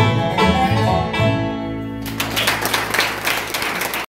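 Bluegrass band with banjo, acoustic guitar and upright bass playing the closing notes of a song and holding its final chord, followed about two seconds in by applause.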